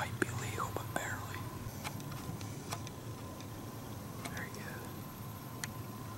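Hushed whispering, in short bursts near the start and again about four seconds in, with a few light clicks between them.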